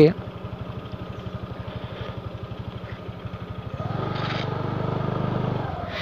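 A scooter's small engine running at low speed with a steady putter. About four seconds in the throttle opens and it runs louder for nearly two seconds, then eases back.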